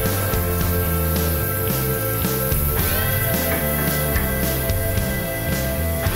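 Background rock music with guitar chords and a bass line stepping from note to note, with new chords struck about three seconds in and again near the end.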